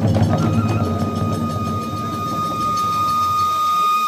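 Hiroshima kagura hayashi ensemble playing: a bamboo transverse flute holds one long high note while the odaiko drum, small gong and hand cymbals strike beneath it, the strokes thinning after the first second. The music stops abruptly at the end.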